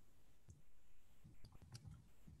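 Near silence: room tone with a few faint clicks, about half a second in and again near the end.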